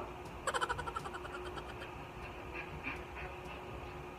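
A woman's short burst of laughter about half a second in: a quick run of rapid 'ha-ha' pulses lasting under a second.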